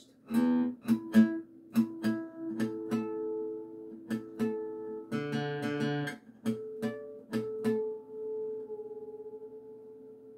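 Acoustic guitar being tuned by ear: single notes and chimes of harmonics plucked one after another and left ringing so their pitches can be compared, with a few strings sounded together about five seconds in.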